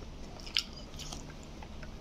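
A person chewing food, with small soft mouth clicks and a sharper click about half a second in.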